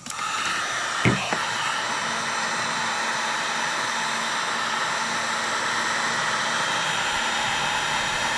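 Wagner electric heat gun blowing steadily on the end of a PEX tube, heating it so the fitting can be pulled off. A brief knock comes about a second in.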